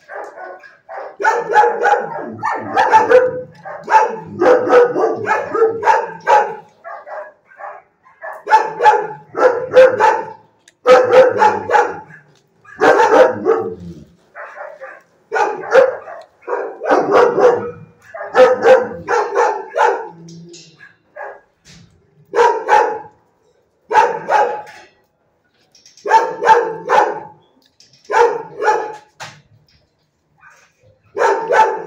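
Dogs barking in a shelter kennel, in quick runs of several loud barks separated by short pauses.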